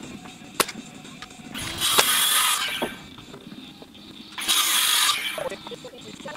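Carpentry power tools fastening a timber lean-to frame. There is one sharp crack about half a second in, then two separate bursts of a tool running hard, each about a second long, the first around two seconds in and the second about four and a half seconds in.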